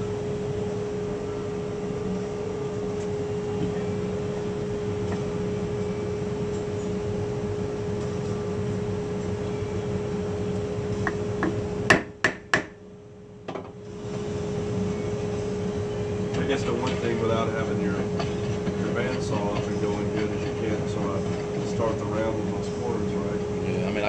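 A wood blank being knocked onto a small lathe's drive center with a few quick, sharp mallet blows about twelve seconds in. Under it runs the steady hum of the shop's dust collection, with one sustained tone.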